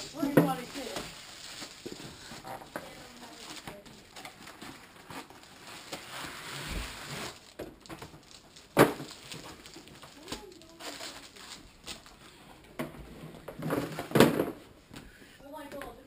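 Gold foil wrapping crinkling and cardboard packaging rustling as a giant chocolate block is unwrapped by hand. There is a laugh at the start, a sharp knock about nine seconds in, and a louder one about fourteen seconds in.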